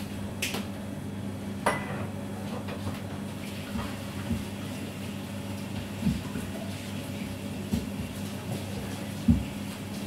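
Kitchenware being handled off to the side: a couple of sharp clinks, then several dull knocks, the loudest near the end, over a steady low machine hum.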